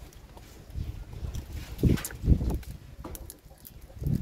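Low rumbling of wind on the microphone, swelling twice about two seconds in, with a few faint clicks and smacks of a person eating grilled fish by hand.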